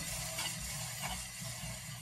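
Front wheel of a Kawasaki ZX6R spinning freely, its brake disc faintly catching on the Tokico caliper pads as it turns, a sign the disc may be slightly warped.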